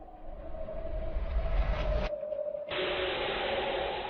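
Sound-design effects over a held drone: a swelling whoosh with a deep rumble that cuts off suddenly about two seconds in, then, after a short gap, a steady hiss over the same sustained tone.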